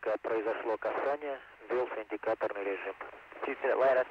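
Speech over a narrow-band radio channel: a voice on the shuttle-to-ground communications loop, talking without a break and cut off above the voice range.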